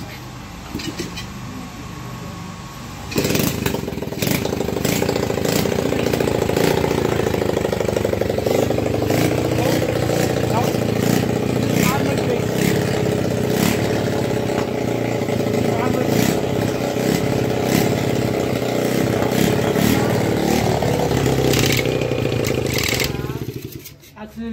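Small four-stroke petrol motorcycle engine starting suddenly about three seconds in and running steadily for about twenty seconds, then cutting out near the end.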